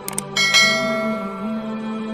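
Subscribe-button sound effect: two quick clicks, then a bright bell chime struck about a third of a second in and ringing out as it fades. A steady low musical drone continues underneath.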